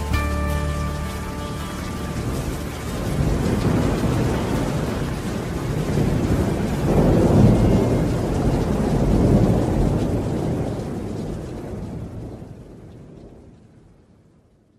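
Thunderstorm sound effect closing a recorded song: steady rain with rolling thunder that swells about halfway through, then the whole storm fades out near the end. The song's last instrumental notes die away in the first second.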